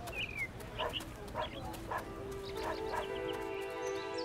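Village ambience for a cartoon scene: a dog barking in short yaps about every half second, and a brief falling bird chirp near the start. Soft background music with sustained notes fades in from about halfway.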